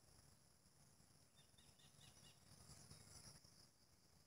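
Near silence: faint outdoor ambience with a low rumble, and a quick run of about five faint, short, high chirps about a second and a half in.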